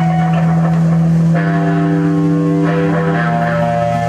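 Live band's electric guitars holding long, ringing notes over a steady low drone with no drumbeat. A new chord comes in about a second and a half in, and another note joins near three seconds.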